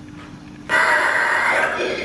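Animated Halloween prop's built-in speaker playing a wordless, voice-like creature sound effect. It starts suddenly about two-thirds of a second in, after a faint steady hum.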